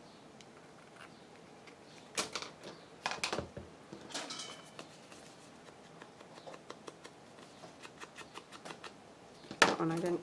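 Small scissors snipping a few times through the corners of a stiff paper card. After that comes a run of quick soft taps as a foam ink blending tool is dabbed on an ink pad and along the card's edges. A brief bit of voice comes right at the end.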